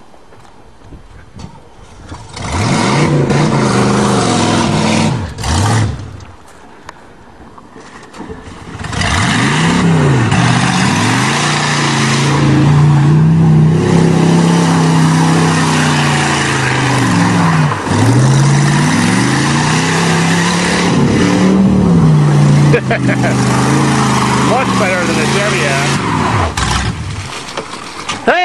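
Oldsmobile sedan's engine with a modified exhaust, revving hard while it spins its wheels in mud. The revs rise and fall again and again, drop away briefly around six seconds in, then stay high and surging until near the end.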